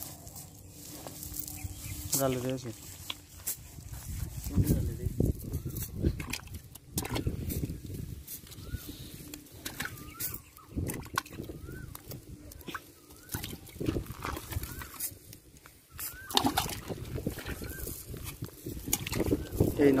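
Irregular slaps, knocks and rustles of a wet cast net and small fish flapping on dry grass as the catch is picked out by hand.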